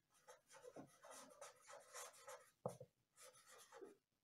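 Pen writing on a sheet of paper pinned to a board: faint, irregular short scratching strokes as a word is written, with one sharper tick a little before three seconds in.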